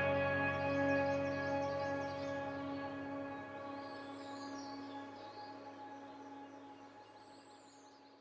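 Ambient background music: a sustained chord that fades out slowly, with two faint high descending whistles, one about two seconds in and one near the end.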